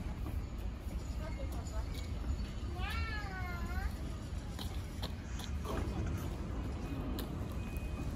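Low steady rumble of an E235-1000 series electric train standing at a station platform. About three seconds in comes a short, high-pitched voice call that rises and falls.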